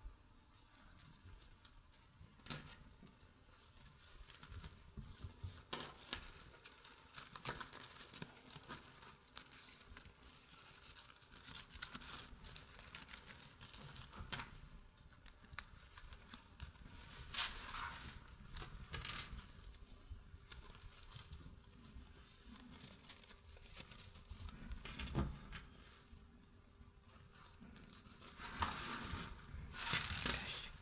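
Stiff, heavily starched lace rustling and crinkling under the fingers as its pleats are adjusted, with scattered faint clicks and a few louder handling bursts.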